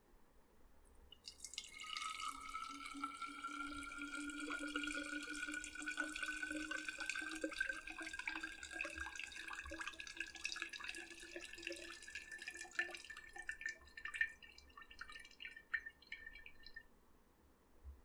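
Liquid poured from a bowl into a glass bottle: a steady pour whose ringing tone rises in pitch as the bottle fills. It thins into a few separate drips near the end.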